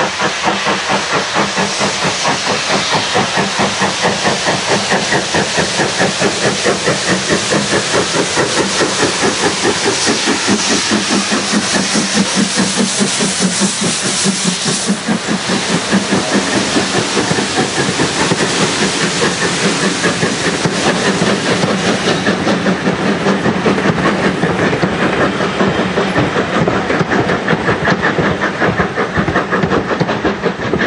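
Midland 4F 0-6-0 steam locomotive working hard with a train, its chimney exhaust beating in a rapid, even rhythm over a hiss of steam as it approaches and passes close by; the beats carry on as its coaches roll past.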